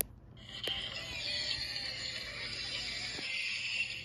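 Short music passage from a television's speaker, recorded off the set. It starts about a third of a second in and stops just before the end, with a sharp click at the very start.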